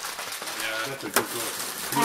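Quiet, low voices in a room, with one sharp click a little past a second in.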